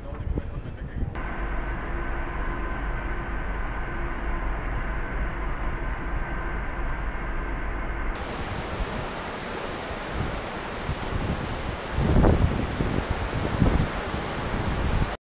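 Open-air ambience aboard a cruise ship in a few spliced takes: a steady hum with faint held tones, then a brighter rushing noise, then wind buffeting the microphone for a moment near the end.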